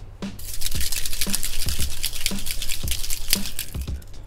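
Cocktail being dry-shaken in a closed metal shaker without ice, with a strainer spring inside: liquid sloshing and rattling in steady, rhythmic strokes. The spring whips the mix so the drink gets a foamy head.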